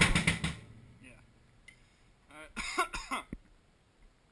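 Drum kit with Zildjian ZBT cymbals playing the last hits of a passage, stopping about half a second in as the cymbals ring out briefly. A short vocal sound, like a cough, follows about two and a half seconds in.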